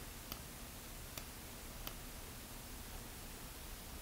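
Faint steady room hiss with three faint, short clicks in the first two seconds, a computer mouse being clicked as a mask is dragged on screen.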